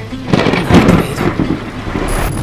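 Thunder sound effect: a loud rumble with sharp cracks that swells up out of silence and peaks within the first second.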